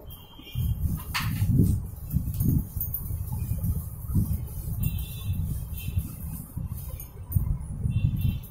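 Chalkboard being wiped clean with a duster: a run of uneven rubbing strokes, one or two a second.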